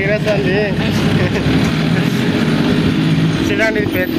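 Engine of the open-bed goods vehicle running steadily as it drives slowly along a street, heard from the back of the bed. A voice can be heard at the start and again near the end.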